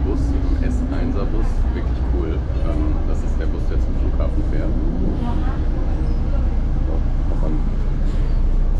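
Old city bus heard from inside its cabin: a loud, steady low engine rumble with road and traffic noise coming through the open windows, and indistinct voices over it.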